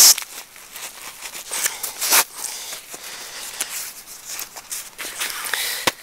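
Rustling and scuffing of nylon backpack fabric as a padded hip belt is worked by hand back into its Velcro-fastened slot in the pack's back panel. The sound is irregular, with a louder scrape about two seconds in.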